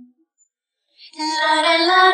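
Isolated female lead vocal with no accompaniment: a sung note trails off at the start, then after about a second of silence a new sustained note begins, rising slightly in pitch.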